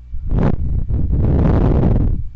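Loud rushing noise of air hitting the microphone, in two gusts: a short one, then a longer one lasting about a second.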